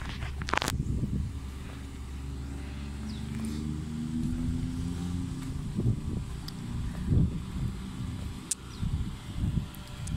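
A car engine running close by over a steady low rumble of road traffic, its hum fading out about two-thirds of the way through, with a few thumps near the end.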